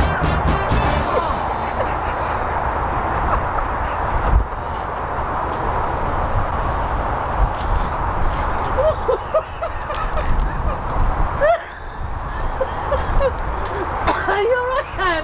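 A large flock of geese honking, a continuous din of overlapping calls, with wind rumbling on the microphone.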